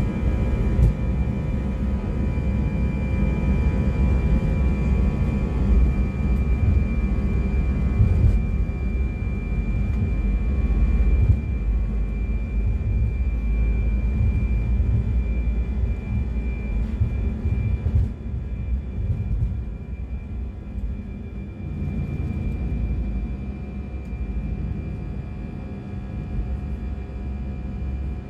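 Jet airliner's takeoff heard from inside the cabin: engines at takeoff thrust with a steady whine over a heavy runway rumble. The rumble eases about two-thirds of the way through as the wheels leave the ground and the aircraft climbs.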